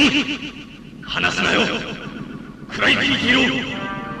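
Non-verbal vocal cries from a television drama soundtrack, wavering in pitch. They come in two loud runs: one about a second in, and another from about three seconds in.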